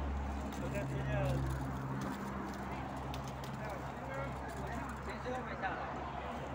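Indistinct voices of several people talking, over a steady low hum and rumble.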